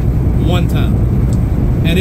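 Semi-truck cab at highway speed: a steady low drone of the engine and road noise, with a brief bit of the driver's voice about half a second in.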